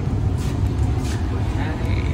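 Steady low rumble and hum inside a railway sleeper coach, the sound of the carriage running and its ventilation.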